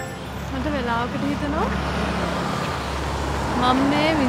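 Steady outdoor road traffic noise, with a person's voice heard briefly about half a second in and again near the end.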